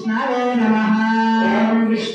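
Sanskrit mantras chanted in a steady, near-monotone voice held on one pitch, with only short breaks at the start and near the end.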